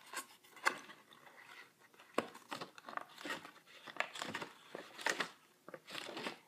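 A Jefferson nickel being pushed into its hole in a cardboard coin album: a quiet run of short scratchy scrapes and rubs as the coin and board are worked, with one sharp click about two seconds in.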